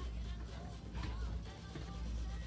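Faint music playing low under a pause in talk, with a steady low bass and a thin melody line.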